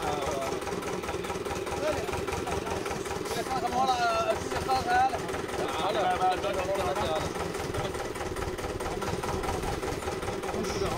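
An engine idling steadily at the well-drilling site, with men's voices in the background.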